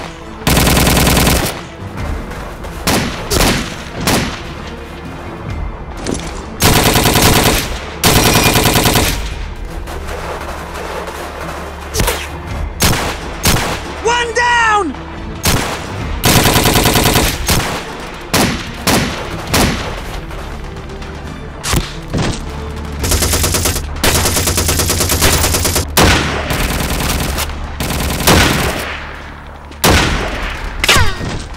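Battle sound effects of gunfire: repeated bursts of rapid automatic fire, the longest about five seconds near the end, broken up by single rifle shots.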